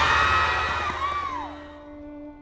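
A crowd of cartoon ants yelling and screaming "It's the Destroyer!", dying away over the two seconds. A single held music note comes in near the end.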